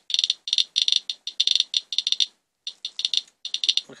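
Radiation Alert Inspector EXP+ Geiger counter with a pancake probe clicking rapidly and irregularly in dense clusters, with a brief lull about two and a half seconds in. The count rate is about 785 counts per minute off a rainwater swipe, well past 20 times the usual background.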